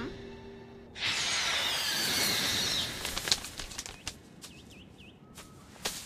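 Sound effect of a large bird swooping past: a rush of air about a second in, then a run of quick wing flaps, with a few faint short chirps near the end.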